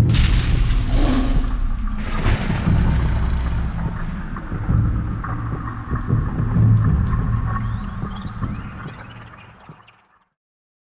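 Cinematic logo-reveal sound effects: a sudden hit with a rushing whoosh, two more whooshes about one and two seconds in, over a deep rumble that slowly fades away near the end.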